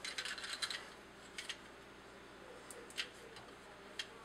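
Faint small plastic clicks and rattles from handling a toy figure's detachable cannon piece: a quick flurry in the first second, then a few single clicks spaced out.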